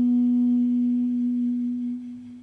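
Armenian duduk holding one long, low, soft note, steady in pitch, that starts to fade near the end as the phrase closes.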